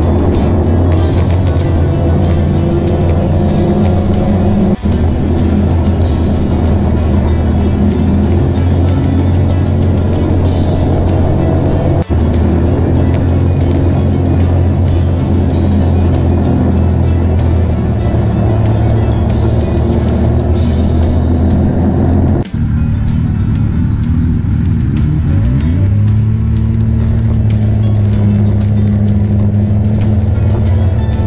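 Snowmobile engine running steadily at trail speed. The sound breaks off briefly three times, and near the end the engine note climbs and levels out as the sled speeds up.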